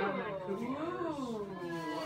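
A long drawn-out vocal 'ooh', rising in pitch to a peak about a second in and then falling again.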